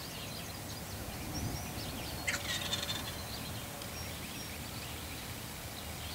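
A wild turkey gobbler gobbles once, a short burst of rapid rattling notes about two seconds in. Faint songbird chirps sound in the background.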